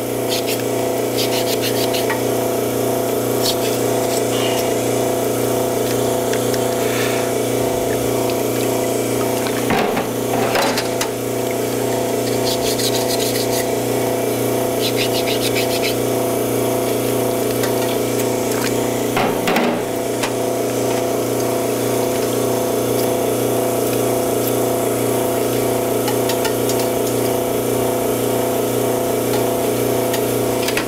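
Steady electric hum of a recirculating beer-line cleaning pump running, with light clinks of stainless faucet parts being handled in a metal sink and two louder knocks, about ten seconds in and near twenty.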